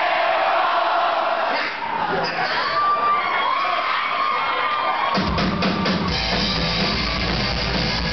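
Concert crowd cheering and whooping, then about five seconds in the band comes in hard with a few drum hits and a heavy low bass line from the upright double bass, and the rockabilly-punk song plays on.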